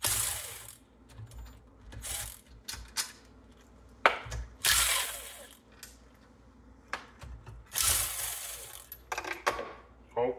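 Cordless drill-driver running in several short bursts as it spins bolts out of a small Briggs & Stratton engine, with sharp clicks and clinks of metal between the bursts.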